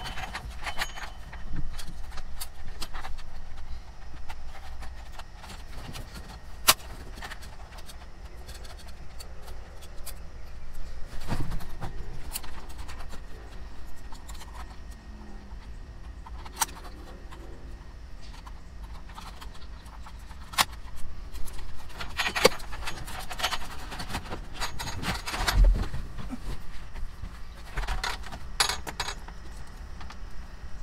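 Plastic dash trim and connectors of a Ford F-550 being handled and fitted back into place, giving scattered clicks and knocks, with keys jingling on the ring hanging from the ignition. The knocks come thicker near the end, over a low steady hum.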